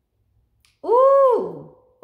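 A woman's drawn-out, high-pitched "ooh" exclamation lasting about a second. It starts a little before halfway through, swells, then drops away in pitch at the end.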